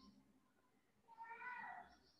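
Near silence with one faint, short high-pitched call about a second in, its pitch falling at the end.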